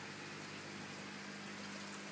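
Aquarium equipment running: a steady hum over a faint, even hiss of moving water.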